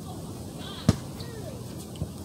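A single sharp snap about a second in as a tarot card is drawn from the deck and handled, over steady low outdoor background noise.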